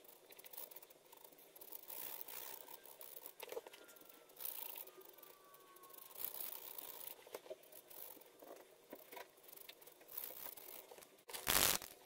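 POSCA paint marker nib scratching and dabbing on card as the petals are coloured in: a faint, scratchy rustle with scattered light taps. Shortly before the end, a much louder burst of rustling noise lasting about half a second.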